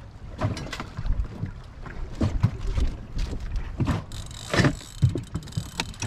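Wind and choppy water on a small aluminium boat, with irregular knocks and thumps against the hull, the loudest a little past the middle. Underneath, a spinning reel is being cranked against a fish that keeps taking line.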